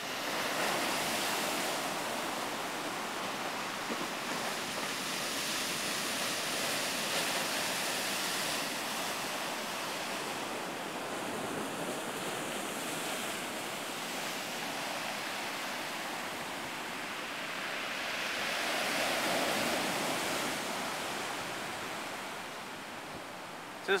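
Surf breaking and washing up a gravel beach: a steady rush of waves that swells and eases as each set comes in.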